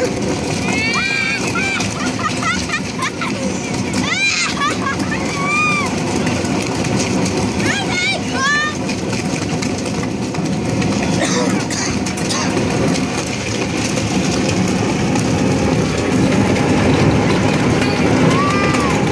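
Hard plastic toy boat hull dragged over asphalt, a steady rough scraping throughout, with a few short high-pitched squeaks over it.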